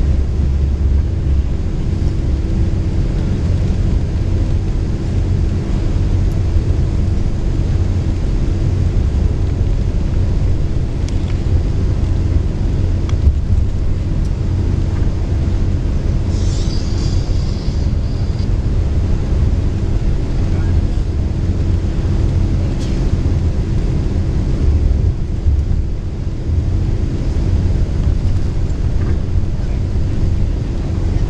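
Inside a moving long-distance coach: a steady low engine and road rumble with a constant hum. A brief higher-pitched sound comes about halfway through.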